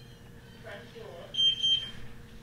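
A short run of high-pitched electronic beeps, two or three in quick succession about a second and a half in.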